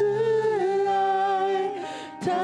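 Worship song: a singer holds one long note over soft accompaniment, easing off near the end.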